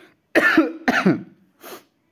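A man coughing: two sharp coughs about half a second apart, then a fainter third one.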